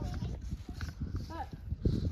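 Young children talking and calling out, with footsteps on dry packed dirt.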